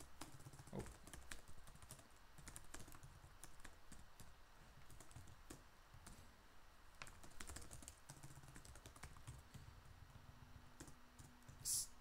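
Faint typing on a computer keyboard: irregular key clicks.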